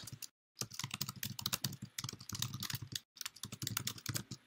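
Computer keyboard typing: a rapid run of keystrokes as a line of text is entered, with brief pauses about a third of a second in and again about three seconds in.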